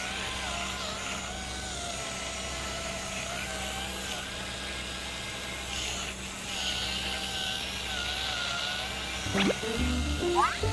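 Small electric motors of two handheld foot-care devices running against the soles of a man's feet, a steady whine whose pitch wavers slowly as they are pressed and moved over the skin.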